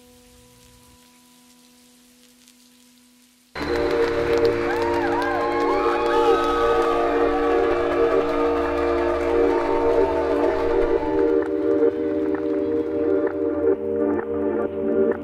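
A faint held chord fades out, then about three and a half seconds in loud music cuts in abruptly: steady sustained chords with swooping pitch glides over them.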